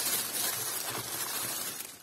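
Thin plastic carrier bag rustling and crinkling as a hand rummages through it, a steady rustle that stops just before the end.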